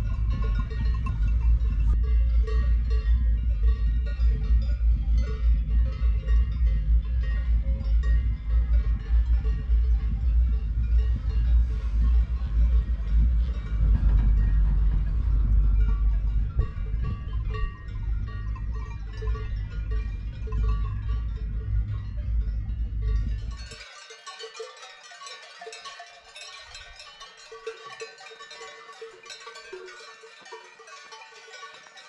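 Cowbells ringing irregularly from grazing cattle, under a heavy low rumble of wind on the microphone. About 24 seconds in, the rumble drops away suddenly and the bell ringing is left clearer and brighter.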